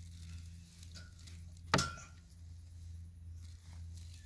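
A single sharp metallic click with a brief ringing tone a little under two seconds in, over a steady low hum: a hand knocking against the wire-mesh garden fence.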